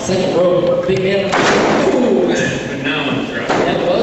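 A heavy body slamming onto a wrestling ring's canvas and boards after a dive off the top rope. A single loud crash about a second in rings on briefly in the hall.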